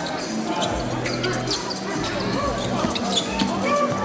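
Basketball bouncing as it is dribbled on the court, over steady arena music.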